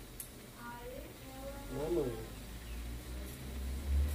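A short stretch of faint, indistinct speech in the middle, over a steady low electrical hum.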